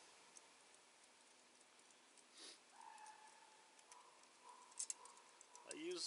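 Near silence, with a few faint metallic clicks near the end from snare cable hardware and quick links being handled.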